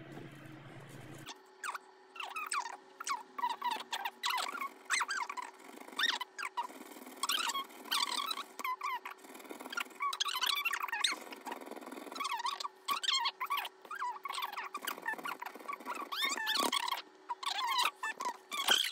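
A coin scratching the coating off paper scratch lottery tickets in quick runs of short, high squeaks with brief pauses between strokes.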